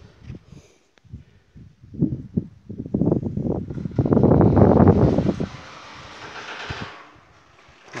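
Wind buffeting a phone's microphone outdoors: irregular low rumbles that build to a loud gust about halfway through, then ease to a fainter hiss.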